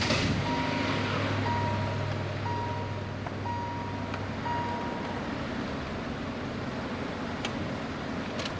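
A 2020 Kia Rio's electronic warning chime beeping about once a second after the car is switched on, stopping about five seconds in, over a low steady hum.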